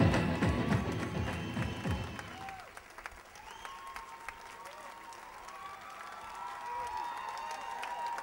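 Music with a heavy beat fades out in the first couple of seconds. An audience then applauds, with a few voices calling out, and the applause grows slowly louder toward the end.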